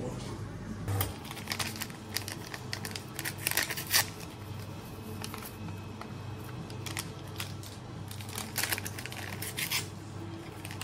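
Sharp clicks, clinks and scrapes of espresso preparation: ground coffee being tamped into a metal portafilter, with denser clatter about three and a half seconds in and again near the end, over a low steady hum.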